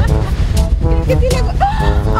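Upbeat, comic background music with a brass-like lead line, over a low rumble of wind on the microphone.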